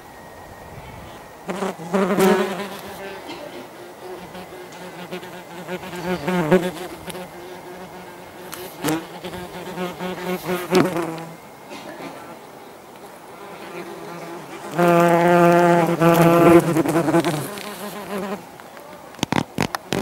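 Yellowjacket wasps buzzing in flight close to the microphone: a pitched wingbeat buzz that comes and goes in several bouts of one to three seconds, the longest and loudest about fifteen seconds in.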